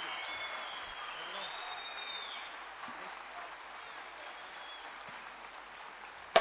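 Theatre audience applauding, dying away gradually.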